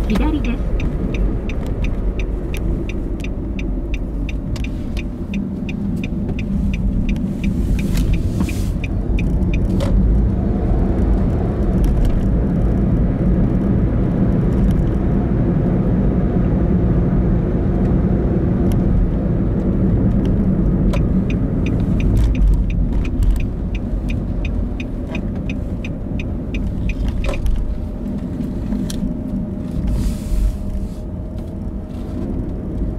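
Car cabin noise, a steady low rumble of engine and tyres while driving, with a turn signal clicking in a fast, even rhythm for roughly the first ten seconds and again from about twenty-one seconds until near the end.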